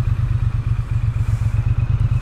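Triumph Bonneville T100 parallel-twin engine running steadily at low road speed as the motorcycle is ridden, a low, evenly pulsing exhaust rumble heard from the rider's seat.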